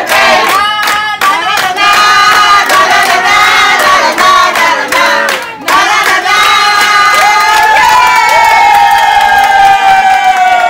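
A group of voices singing a birthday song together, clapping in time, with the claps plainest in the first second or so. The song ends on a long held note.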